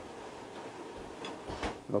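A few faint ticks of a slicing knife against the cutting board as raw fish is sliced thinly, over a steady hiss.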